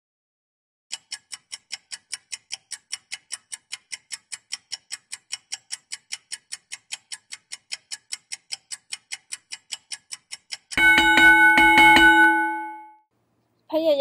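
Countdown-timer sound effect: even ticking at about four ticks a second for nearly ten seconds, then a bell ringing as time runs out, fading away over about two seconds.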